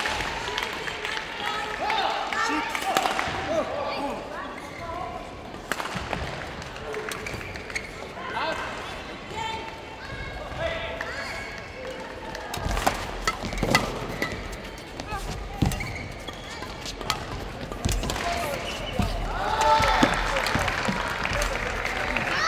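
Badminton play in a sports hall: sharp, irregular knocks of racket strikes and footfalls on the court. Voices and calls rise near the start and again toward the end.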